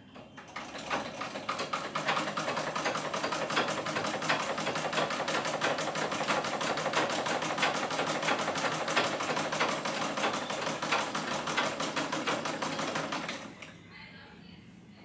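Black domestic sewing machine stitching fabric with a rapid, even mechanical clatter, starting about half a second in after the handwheel is turned by hand and stopping shortly before the end.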